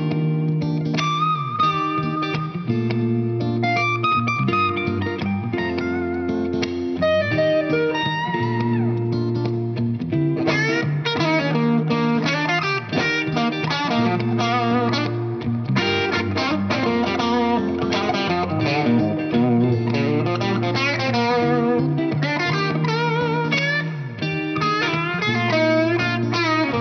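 A Fender electric guitar played as a demo. For the first ten seconds or so it plays single-note melodic lines over held low notes, then it moves to busier, faster chord playing.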